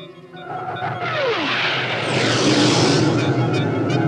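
Cartoon sound effects over the music score: a falling whistle-like tone, then a swelling rocket-like rush as the rocket-propelled robot mouse jets along.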